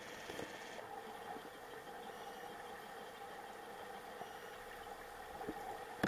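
Underwater sound of a swimming pool heard through a camera's waterproof case: a steady muffled hum and hiss of moving water, with a few faint ticks of bubbles.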